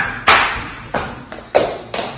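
Three sharp thumps, each dying away over about half a second, with the middle one weakest.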